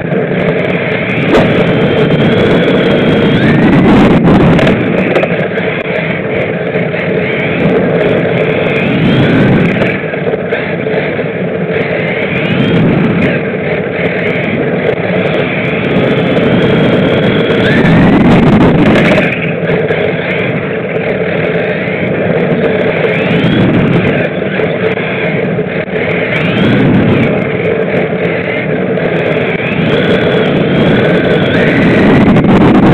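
Electric motor and drivetrain of a 1/16-scale Traxxas Ford Fiesta RC rally car, heard from a camera mounted on the car, whining and rising in pitch again and again as it accelerates through the laps. Two louder noisy stretches come about four seconds in and just before twenty seconds.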